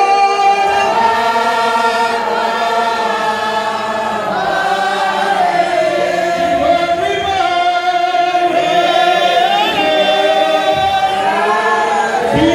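A congregation singing a slow hymn together, with a man singing into a microphone among them; the voices hold long notes that shift slowly in pitch.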